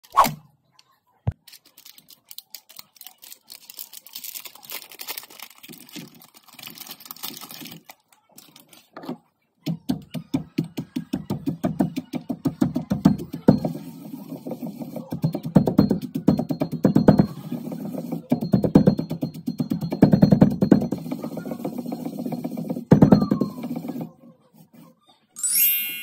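Cream-filled cocoa cookies in a stone mortar. First comes a crinkling packet and crunchy rustling as the cookies tip in. From about ten seconds in, quick, rhythmic pestle strokes crunch and grind them to crumbs.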